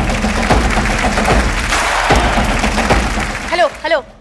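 Studio audience clapping over loud background music with a steady drum beat. A woman's voice calls out near the end.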